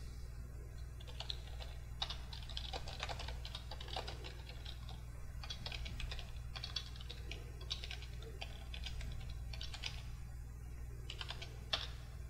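Computer keyboard typing in irregular bursts of key clicks, with one louder keystroke near the end.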